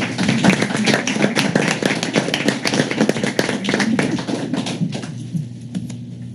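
A small group applauding, with dense scattered claps that die away about five seconds in.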